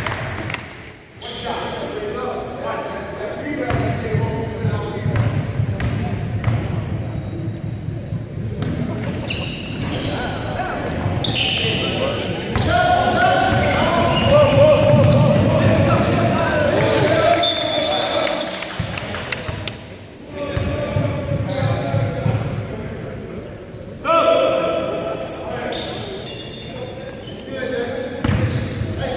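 A basketball dribbled on a hardwood gym floor, the bounces coming as repeated sharp strikes, with players' and spectators' voices echoing in the hall.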